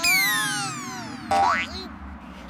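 Cartoon sound effects: a whistle-like tone that slides down in pitch for over a second, then a short, loud whistle sweeping sharply up.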